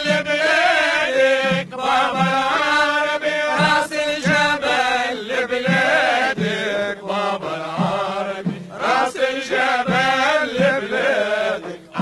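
A Tunisian Sulamiya troupe chanting a Sufi praise song, men's voices singing a winding melody that bends through long held notes.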